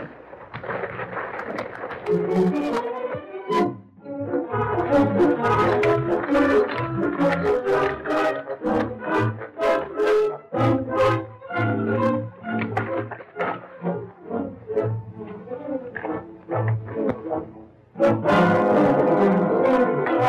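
Dramatic brass-led film-score music with repeated sharp percussive hits.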